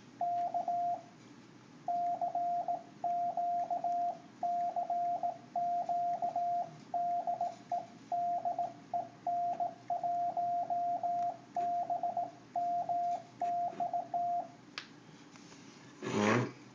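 Morse code sidetone from a Yaesu FT-950 transceiver's built-in keyer, worked from a touch key's brass paddle pads: a single steady tone of about 700 Hz sent as quick dots and dashes in short groups. It stops about a second and a half before the end, followed by a faint tap.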